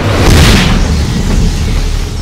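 Trailer sound-design boom: a loud deep hit with a burst of hiss about half a second in, settling into a long low rumble.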